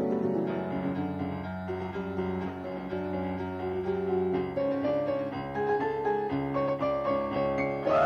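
Piano playing an instrumental passage of a song demo, a busy run of chords and moving notes with no singing.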